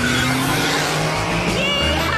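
A car peeling out: tires squealing in a wheelspin as it launches.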